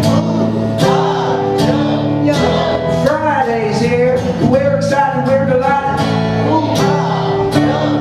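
Live solo acoustic guitar, strummed steadily, with a man singing over it through the PA.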